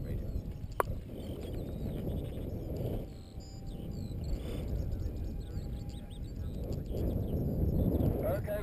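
Wind buffeting the microphone in an open field, with small birds chirping and singing above it and a single sharp click about a second in.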